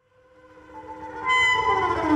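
Ensemble music fading in from silence: sustained, overlapping long notes from piano, double bass and reeds swell slowly. It grows sharply louder and brighter just past a second in.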